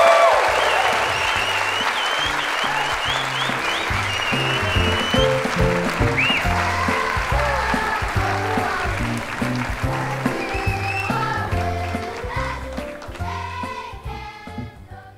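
Audience applauding over walk-on music with a bass line. The applause thins out near the end while the music carries on.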